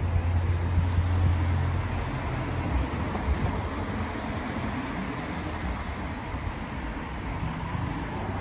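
Wind buffeting the microphone, with a heavy low rumble for about the first two seconds that then eases, over a steady hiss of wind and distant road traffic.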